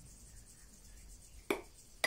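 Faint room hum with one sharp click of kitchenware about one and a half seconds in, as thick mango custard is poured from a pan over biscuits in a glass dish.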